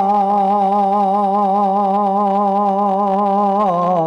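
A man's voice reciting a naat, holding one long sung note with a slight waver, dropping to a lower note near the end.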